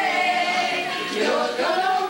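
A woman singing into a handheld microphone, with other voices singing along as a group.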